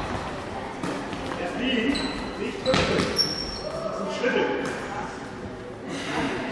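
Handball game in a large, echoing sports hall: the ball bounces on the court floor a few times amid players' and spectators' voices.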